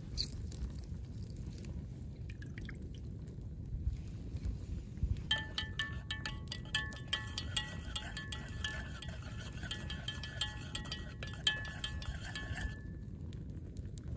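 A long metal spoon stirring a drink in a stainless steel pitcher. It clicks rapidly against the sides and sets the pitcher ringing with a steady chime-like tone, starting about five seconds in and stopping shortly before the end.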